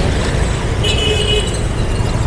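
City street traffic heard from a moving motorbike: a steady rumble of engines and wind, with a short horn beep about a second in.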